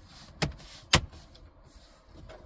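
Plastic clips of a dashboard trim panel snapping into place as the panel is pressed home by hand: two sharp clicks about half a second apart.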